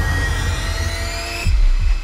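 Trailer score: a rising tonal swell climbs for about a second and a half, then breaks off into a sudden deep low boom that holds.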